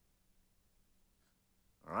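Near silence: faint room tone with a low steady hum, broken near the end by a voice starting to say "all right".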